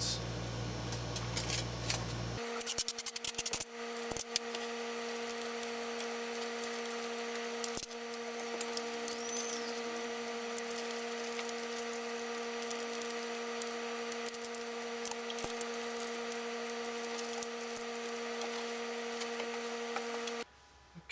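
Blue painter's tape being pulled off its roll in a quick run of crackling clicks a couple of seconds in, then handled and pressed along the edge of a battery pack frame with scattered light clicks, over a steady hum.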